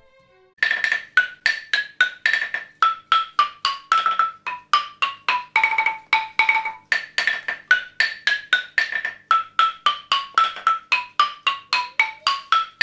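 Drova, a Russian folk xylophone of tuned wooden logs strung together, struck with two mallets: a quick tune of short, dry notes, about four a second, starting just under a second in.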